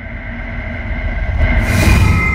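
Logo-animation intro sound effect: a deep rumble swelling steadily louder, with a rising rush of hiss that peaks as the logo slams together at the end.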